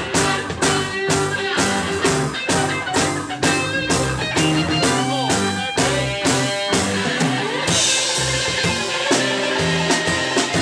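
Live rock band playing: electric guitars over bass and drum kit with a steady beat, a guitar bending notes around the middle and a cymbal crash a little before the end.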